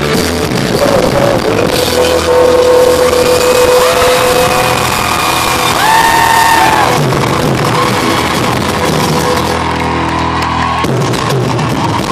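A live band playing a pop-rock song with acoustic guitar and drums, recorded loudly from the audience, with long held notes.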